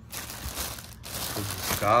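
Thin plastic bag crinkling and rustling as a hand pulls coiled audio cables out of it, with a brief break about a second in.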